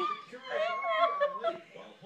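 High-pitched voices of a young child and a woman laughing and vocalizing playfully without clear words.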